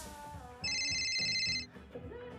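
Mobile phone ringing: one burst of a high electronic ring tone, about a second long, starting about half a second in.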